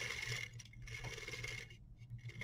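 Plastic VEX gear train cranked by hand, its teeth meshing with a whirring rattle while the large 84-tooth output gear spins fast. The train is geared up about 27 to 1 for speed. The whir fades out near the end.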